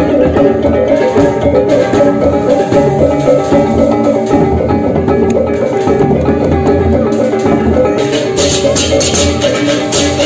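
Balinese baleganjur gamelan playing in a dense, steady rhythm: clashing ceng-ceng hand cymbals over ringing bronze gongs. The cymbal clashes grow brighter and more prominent near the end.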